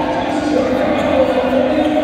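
Several indistinct voices overlapping, echoing in a large gym hall.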